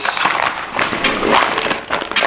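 Close, irregular rustling and clicking handling noise, as the camera and the plastic-wrapped frozen fish are moved about by hand.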